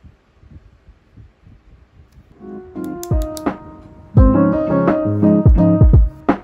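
Faint soft ticks of a pen writing on paper, then background music comes in about two seconds in: piano-like keyboard notes, joined about four seconds in by a loud beat with deep drum thumps.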